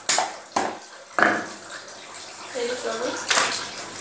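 Catla fish being cut on a boti's upright curved blade: sharp, wet scraping strokes as the fish is drawn against the blade, three in quick succession and another about three and a half seconds in.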